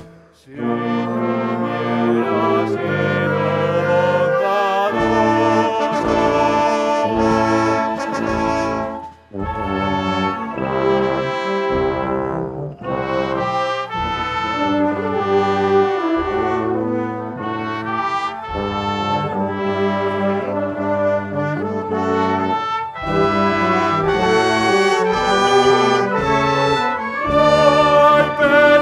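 A live wind band playing an instrumental passage, with trombones and trumpets to the fore. The playing breaks off briefly about nine seconds in.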